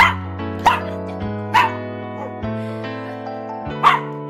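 A small dog barking four short, sharp times, right at the start, twice more in the first two seconds and once near the end, over background music with sustained notes.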